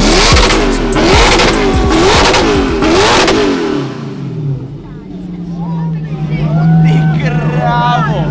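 A sports car's engine is revved again and again in quick blips, its pitch rising and falling about twice a second. About four seconds in it settles into a steadier, slowly climbing note. Crowd voices and shouts sound over it.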